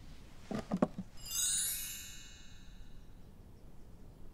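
A bright cascade of chime tones, entering from the top down like a glittering glissando, a little over a second in and fading out within about a second and a half: a sparkle sound effect for a reveal. Just before it, a couple of brief low sounds.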